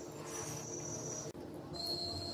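Close-up chewing of a mouthful of rice with egg curry eaten by hand. A steady high, thin tone sits behind it, breaking off briefly about two-thirds of the way through and coming back lower in pitch near the end.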